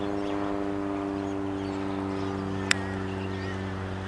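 An iron striking a golf ball in a short, low chip shot: one sharp click nearly three seconds in. A steady machine hum runs underneath throughout.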